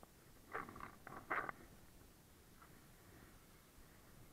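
Skis scraping over icy hardpack: three or four short, hissing scrapes in the first second and a half, the last the loudest, on skis with blunt edges on ice.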